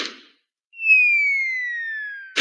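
Cartoon falling-whistle sound effect: a single whistle tone gliding slowly downward, starting a little under a second in, marking something dropping. At the very start, the fading end of a short hit.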